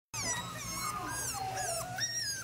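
A litter of five-week-old puppies whimpering and whining together: many overlapping high, wavering cries.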